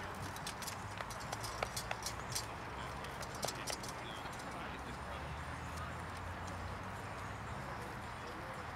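Horses' hooves clip-clopping on the jousting field: scattered sharp clicks in the first half, over a steady low background.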